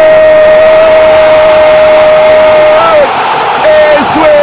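A football commentator's goal call: one long shout held on a single pitch, breaking off about three seconds in as the stadium crowd noise swells, then more excited shouting near the end.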